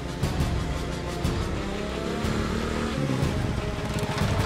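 A motorcycle riding up with its engine running, mixed with background music.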